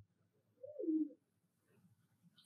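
A single faint coo of a pigeon, about half a second long, falling in pitch.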